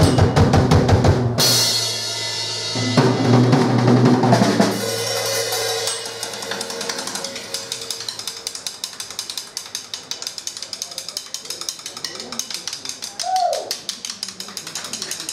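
Rock drum kit playing. For the first few seconds it plays against sustained bass-heavy band sound, with an abrupt break about a second and a half in. From about five seconds in the drums play alone: fast, steady snare, tom and cymbal strokes. A short falling tone is heard near the end.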